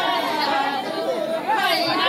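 A group of women's voices talking and calling over one another amid a group folk song, with held sung notes running through; no drum beats stand out.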